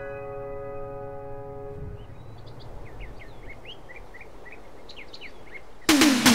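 A soft sustained keyboard chord fades out over the first two seconds. Then birds chirp in short rising and falling calls over a faint steady hiss. Just before the end, a loud electronic dance track cuts in suddenly with a falling sweep.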